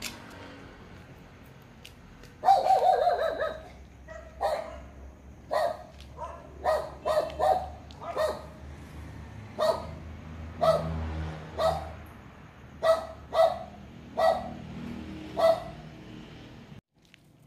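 A dog barking: one longer, drawn-out bark about two and a half seconds in, the loudest sound, then about a dozen short single barks at uneven intervals.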